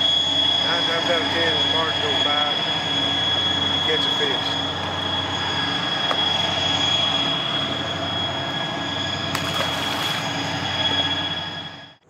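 A steady high-pitched whine with a lower steady hum beneath it, with a few brief voice-like sounds in the first seconds. It fades out at the end.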